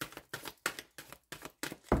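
A deck of tarot cards being shuffled by hand, the cards flicking and slapping against each other in quick short strokes, ending with a thump near the end as the deck is knocked square on the table.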